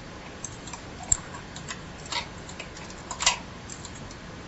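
A latch tool clicking and tapping against the needles of a Bond knitting machine as stitches are reworked by hand: a few scattered sharp clicks, with louder ones about a second in and a short cluster near the end, over a steady tape hiss.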